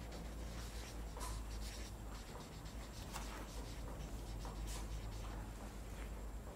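Marker pen writing on a Post-it easel pad sheet: short strokes at uneven intervals, over a low steady room hum.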